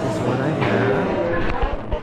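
Speech: people talking in a restaurant dining room, with a couple of low thuds near the end.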